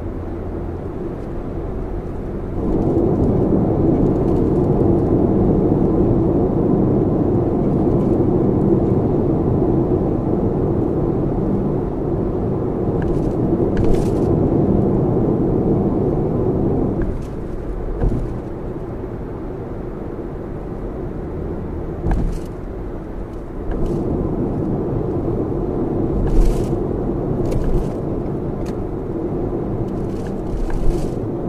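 Steady tyre and road noise of a Lexus RX 450h cruising on an expressway, heard inside the cabin. It grows louder a couple of seconds in, eases off about halfway through, and rises again later, with a few short clicks along the way.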